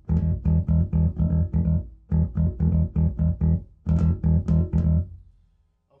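Electric bass guitar played through a 2x12 bass cabinet with Beyma 12WR400 woofers and a tweeter, amp head EQ set flat: quick repeated punchy low notes, about five a second, in three phrases with short breaks. The notes stop about five seconds in. The low end is very tight, controlled and responsive.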